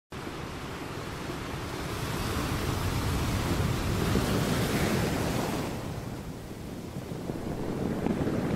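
Sea surf breaking on a beach: a steady rush of waves that swells midway and then eases off.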